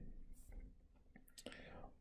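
Near silence in a pause of a lecturer's speech: a faint breath-like hiss and a few faint clicks.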